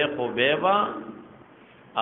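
A man speaking, his voice trailing off about a second in, followed by a short pause before he speaks again.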